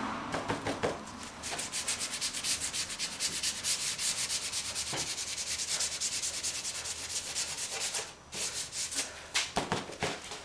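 Gloved hand scrubbing a crumpled wad back and forth over a spray-painted board: quick scratchy rubbing strokes, several a second, with a short pause near the end before they start again.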